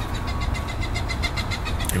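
Thin Bible pages being flicked rapidly under a thumb, a quick even run of about ten flicks a second, over a low wind rumble on the microphone.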